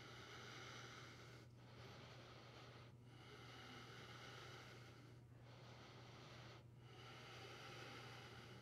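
Faint Ujjayi breathing through the nose: a soft hiss of breath in and out, each breath lasting about one and a half to two seconds with a short pause between, over a steady low hum.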